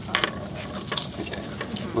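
A few short, sharp mechanical clicks from a craft knife being handled and readied.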